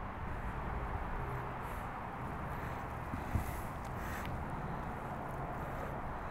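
Steady outdoor background noise, an even low rumble and hiss, with one faint click about three and a half seconds in; the sauce being poured makes no sound that stands out.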